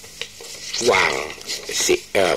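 Speech: a man talking in Thai.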